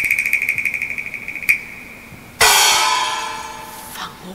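Chinese opera percussion. A fast, pulsing roll on a high-pitched percussion instrument stops short about a second and a half in. Then a single loud gong stroke rings out, its pitch sliding down as it dies away.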